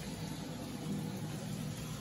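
A steady, low mechanical hum with no change in level.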